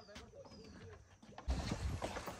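Faint bird calls: a few short, high falling whistles and some lower calls. A louder, noisy sound of movement comes in about a second and a half in.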